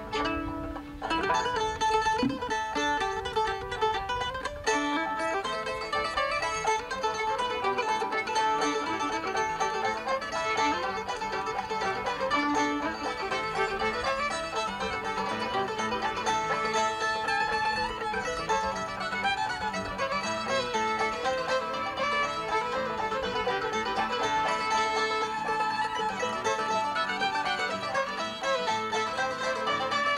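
Acoustic bluegrass string band playing an instrumental old-time fiddle tune in A minor on fiddle, mandolin, banjo, acoustic guitar and upright bass.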